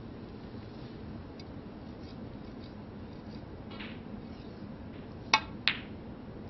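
A snooker shot: two sharp clicks about a third of a second apart near the end, the cue tip striking the cue ball and the cue ball hitting an object ball, over quiet arena room tone.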